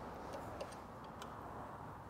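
Faint, irregular light ticks of a steel Allen key working in the side stand's mounting screws as they are tightened, a few clicks spread over the two seconds against low room hiss.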